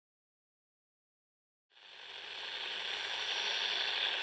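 Silence, then a steady crackling hiss that fades in a little before halfway and holds.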